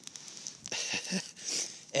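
A man's breathy, wordless laughter over a brushwood fire of dry twigs and branches burning on snow, crackling faintly.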